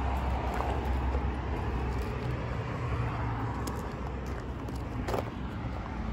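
A vehicle engine idling, a steady low hum, with a sharp click about five seconds in.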